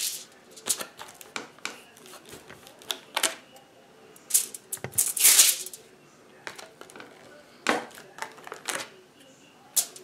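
Irregular light taps and short paper rustles, with a few louder swishes around the middle, as hands dab and press paint onto a small paper collage.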